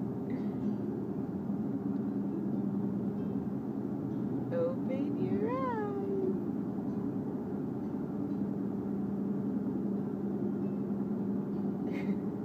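Steady road noise inside a moving car's cabin, with a baby fussing once about halfway through: a short whine that rises and falls in pitch.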